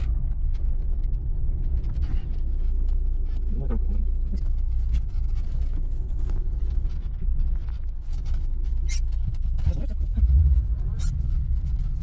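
Cabin sound of a 1990 Lada Samara (VAZ-2108) creeping over a broken, rutted road: a steady low engine and road rumble with scattered small knocks and rattles.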